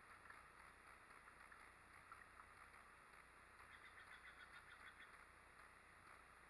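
Near silence: faint outdoor ambience, with a faint run of quick, evenly spaced high chirps about four seconds in.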